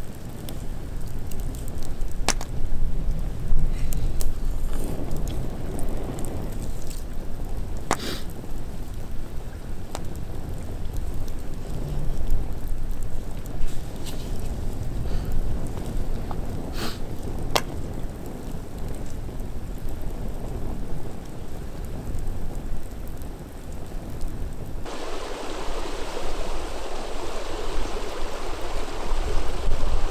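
Wind rumbling on the microphone while a wood bonfire crackles, with a few sharp pops. About 25 seconds in, the sound changes abruptly to a steadier, hissier outdoor noise.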